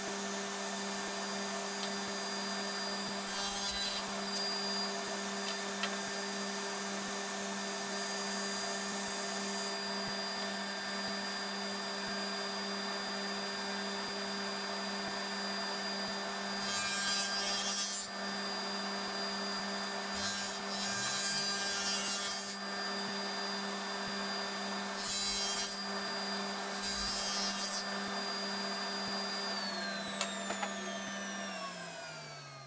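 Table saw running steadily, with a few short bursts of cutting as a small wooden block is fed through the blade along the fence. At the very end the motor is switched off and its pitch falls as the saw winds down.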